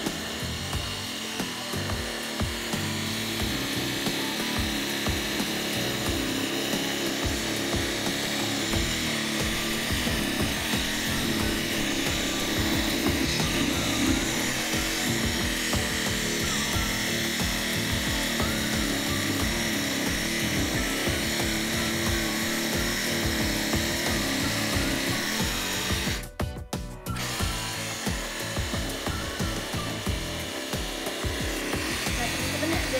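Small electric toy scroll saw running, its fine reciprocating blade cutting through thin plywood as the board is fed by hand. The sound drops out briefly near the end.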